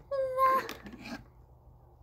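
A single short, high-pitched drawn-out vocal sound, about half a second long, right at the start, holding one pitch and dipping slightly as it ends.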